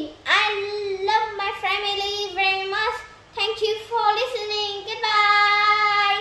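A young girl singing a short line without accompaniment, in held, steady notes, ending on a long sustained note.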